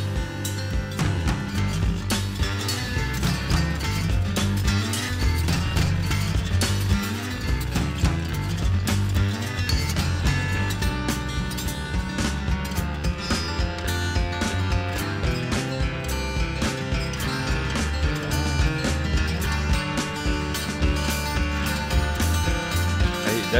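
Recorded rock instrumental playing: picked guitar over a strong, melodic bass line, with drums keeping a steady beat.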